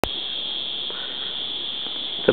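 A steady high-pitched whine over faint background noise, with a sharp click at the very start.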